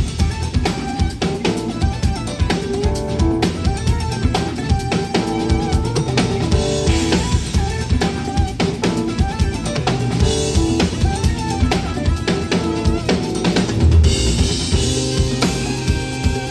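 A Ludwig drum kit with two bass drums played live in a busy groove of bass drum, snare and rimshots, with cymbal washes, over a backing track with melodic instrument lines. A big accented hit with a cymbal crash lands about 14 seconds in.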